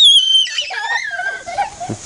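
A very high-pitched squeal, held for about half a second, then breaking into lower voice sounds and a short laugh near the end.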